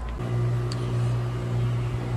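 Newly installed Armstrong Air central air-conditioning condenser running: a steady low hum from the compressor and fan, starting just after the cut.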